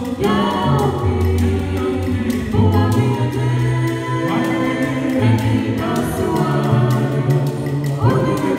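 Mixed male and female a cappella gospel group singing in close harmony into microphones, a deep bass voice carrying the low line, with a gourd shaker ticking out a steady beat.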